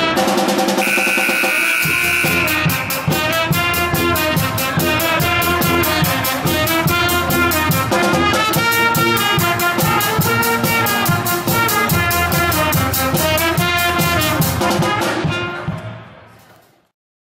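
Pep band playing an up-tempo tune: trumpets, clarinet, saxophone and sousaphone over a steady snare and bass drum beat, with a high note held briefly about a second in. The music fades out near the end.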